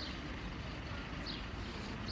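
Outdoor street background: a steady low rumble, with a few short, high, falling bird chirps over it.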